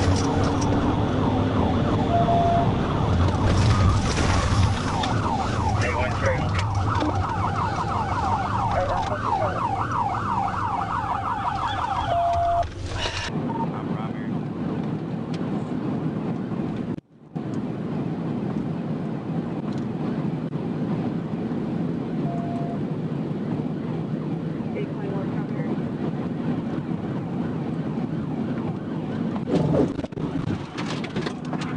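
Police cruiser siren sounding in rapid rising-and-falling sweeps over engine and road noise during a high-speed pursuit. About 13 s in it gives way abruptly to the steady engine and road noise of a second cruiser running at over 100 mph.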